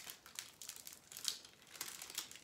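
Faint crinkling of a Paqui One Chip Challenge foil wrapper being handled, a scatter of soft crackles.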